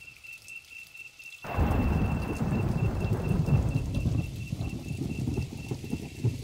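Thunderstorm sound effect in a psychedelic trance track's outro: a soft high beep repeats about three times a second, then about a second and a half in a sudden loud rumble of thunder breaks over rain and slowly eases.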